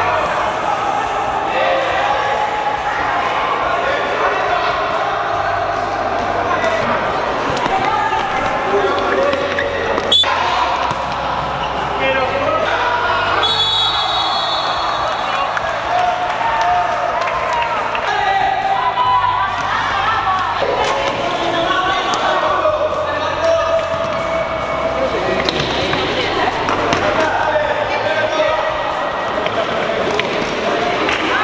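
Sounds of a children's indoor futsal match in an echoing hall: shouting voices, and the ball thumping on the hard court floor with one sharp knock about ten seconds in. Music with a steady, stepping bass line plays underneath.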